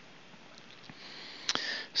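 A man breathing in through the nose: a soft hiss building over about a second, ending in a small mouth click.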